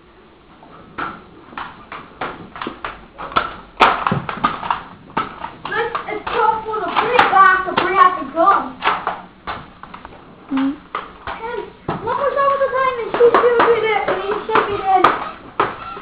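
A child's high voice calling out, over a quick run of sharp knocks or clicks, several a second, that starts about a second in and goes on throughout.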